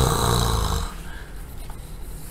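A man's short, breathy laugh, loud in the first second and then dying away.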